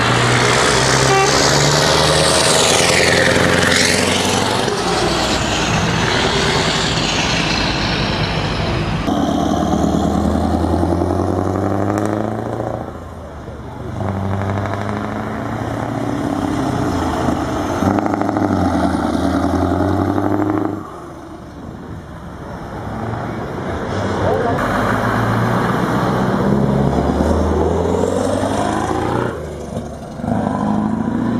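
Scania V8 diesel truck engines in several short clips one after another, revving and pulling away, the engine note climbing and then dropping again and again.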